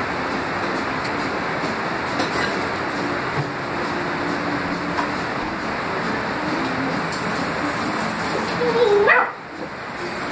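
Beagle giving a single bark about nine seconds in, its pitch rising sharply, over a steady background hiss.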